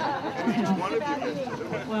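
Speech only: several people talking at once in a small standing crowd.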